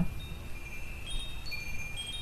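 Soft chimes ringing in the background: a few high, bell-like notes at different pitches that ring on and overlap.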